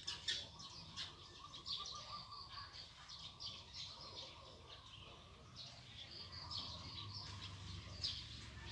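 Faint chirping of small birds: many short, high calls scattered throughout.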